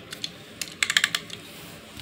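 A quick run of light plastic clicks and taps about a second in, from toy trains being handled and knocked together.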